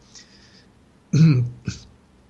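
A man breathes in, then clears his throat with a short vocal sound about a second in, followed by a brief click of the mouth.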